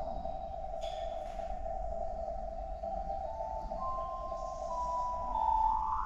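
Electronic ambient soundscape: a sustained synthesizer tone holds one steady pitch, with a few short higher tones joining in the middle, then glides steeply upward near the end.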